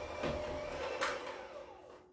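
Electric hand mixer running, its beaters churning thick snickerdoodle dough in a bowl. The motor hum steadily gets quieter toward the end.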